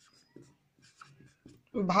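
A marker pen writing on a whiteboard: faint, short scratching strokes spaced out over a couple of seconds.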